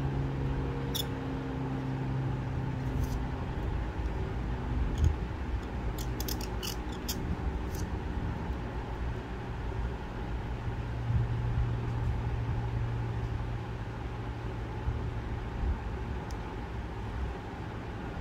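Calligraphy pen nib scratching and ticking on paper in short, scattered strokes, mostly in the first half, over a steady low background hum.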